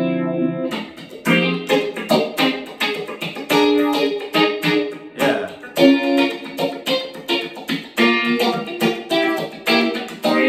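Electric guitar played through an analog phaser pedal, the BigNoise Phase Four, set with sweep and resonance fully counterclockwise for a classic spacey phasing sound. It plays a run of picked notes and short chords, picked up by an iPhone microphone.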